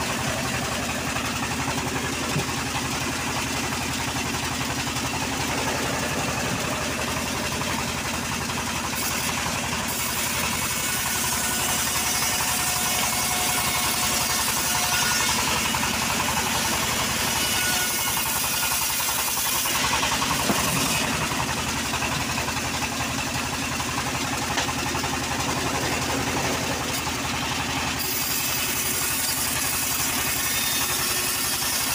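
Homemade engine-driven bandsaw mill running steadily while its blade slices lengthwise through a teak slab: a constant engine drone under the noise of the blade cutting wood.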